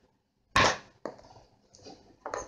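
Packaging of a bath concentrate being handled and opened: one short, sharp crack about half a second in, then a few faint clicks.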